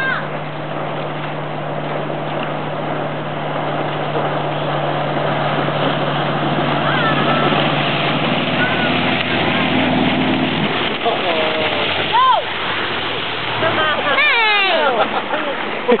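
Motorboat engine running steadily over rushing water, its note stepping up about eight seconds in before the engine hum cuts out after about ten and a half seconds. Then a loud shout about twelve seconds in, with whoops and laughter near the end.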